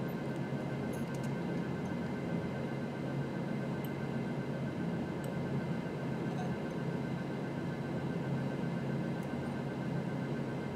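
A steady low background hum with faint high tones in it, and a few faint clicks scattered through.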